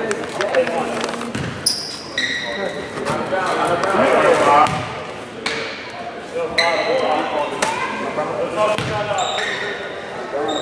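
A basketball bouncing on a hardwood gym floor, with several short, high sneaker squeaks and people's voices.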